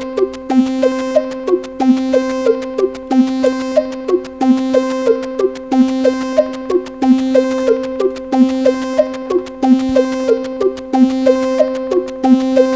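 Eurorack modular synthesizer patch playing a looping electronic pattern: a held droning tone under short blips that drop in pitch, with faint ticking noise hits. The pattern repeats about every 1.3 seconds, its rhythms clocked by divisions and multiplications from an AniModule TikTok clock divider/multiplier.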